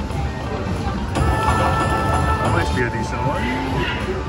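Tiki Fire slot machine playing its electronic bonus music and chimes during a free game. It gets louder about a second in as the reels land and a line win adds to the win meter.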